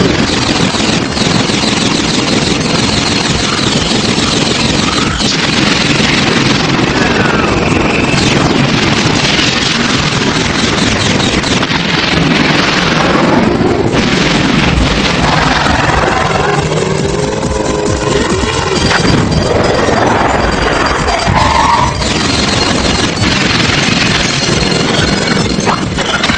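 Cartoon action soundtrack: background music mixed with a dense, continuous layer of battle sound effects, crashes and blasts, with a few sliding tones.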